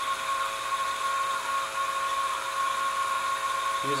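Steady whine from running lab equipment: a constant high tone with a few fainter steady tones under it and a hiss on top, unchanging throughout.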